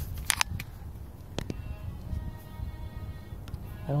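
Camera handling noise: a few sharp clicks and rustling near the start and another click a second later, over a low rumble. Faint background music comes in after that.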